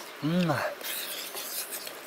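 A man's short closed-mouth "mm" of relish, rising and falling in pitch, a quarter of a second in, as he eats mashed purple yam. Faint rubbing and scraping noise runs under it.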